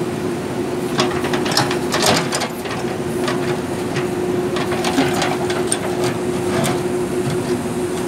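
JCB backhoe loader's diesel engine running steadily while its backhoe bucket digs through loose gravel and rubble, with scattered scrapes and clanks of the bucket on stone, thickest about one to two seconds in and again around five to seven seconds.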